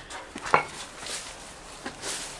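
Twigs snapping and leaves rustling as someone pushes on foot through dense overgrown brush, with one sharp snap about half a second in and a softer one near the end.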